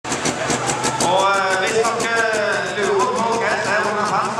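Sigma Power pulling tractor's engine running with an even pulse of about six beats a second, with a man talking over it.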